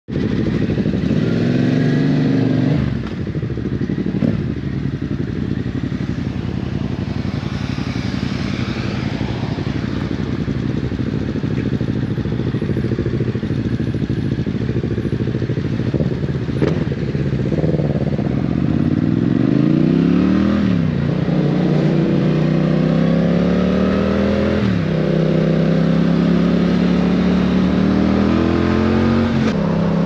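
Yamaha Tracer 7's 689 cc parallel-twin engine running through a DSX-10 aftermarket exhaust, heard on board. After a short rev near the start it stays at low revs for a long stretch. It then pulls away, the revs climbing and dropping back sharply at each of three upshifts.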